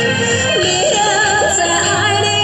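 Karaoke backing track of a Taiwanese Hokkien ballad playing its instrumental interlude: a wavering lead melody with vibrato over the accompaniment.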